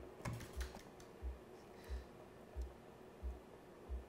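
A round magnet being handled and settled over a powered magnetic-levitation base: a few light clicks in the first half second, then a faint steady hum. Soft low thumps repeat evenly, about one and a half times a second.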